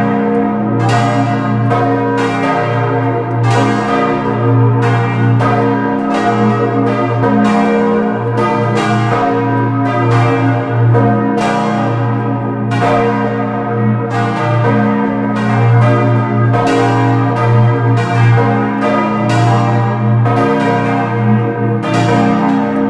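Full peal of four swinging bronze church bells cast by Cavadini in 1931, tuned B♭, d', f' and g', clappers striking one to two times a second in an irregular, overlapping pattern. The heavy B♭ great bell's deep hum runs beneath the higher bells.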